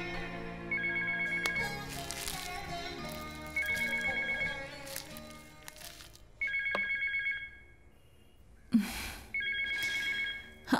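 A phone ringing four times, short electronic rings about three seconds apart. Background music fades out over the first half, and a sudden short noise, the loudest moment, comes just before the last ring.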